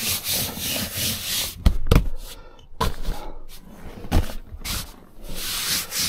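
Hands rubbing and sweeping across the quilted fabric of a padded car back-seat extender, a dry scuffing rustle in several strokes, with a few dull thumps as the padding is pressed down, the strongest about two seconds in.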